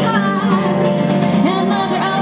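A woman singing a song while playing acoustic guitar, amplified through a microphone and small busking amplifier.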